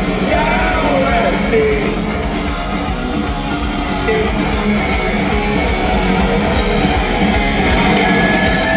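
A live rock band playing loudly with electric guitar to the fore, heard from among the audience in an arena.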